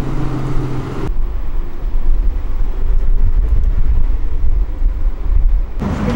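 City bus engine humming steadily for about a second, then a sudden change to a loud, heavy low rumble of a bus underway, engine and road noise with some wind on the microphone.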